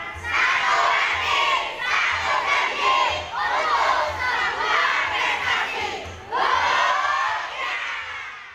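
A large group of children shouting together in several loud bursts, like a chanted yell, with short breaks between the bursts.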